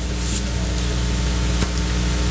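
Steady hiss with a low hum beneath it: the background noise of the room and its recording system, with no one speaking.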